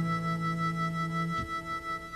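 Irish folk ballad sung live: a man's voice holds one long, steady note over harmonica and acoustic guitar, easing off about a second and a half in.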